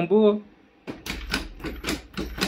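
Xiaomi CyberDog 2 robot dog moving its legs: a quick, irregular run of sharp clicks and taps over a low motor hum, starting about a second in.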